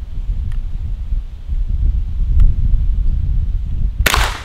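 Wind buffeting the microphone, a steady low rumble with a faint tick or two, ending in the sudden loud crack of a scoped rifle shot.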